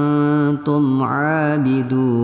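A voice reciting the Quran in a melodic, drawn-out tajwid style: long held vowels whose pitch slowly rises and falls, with brief breaks about half a second in and near the end.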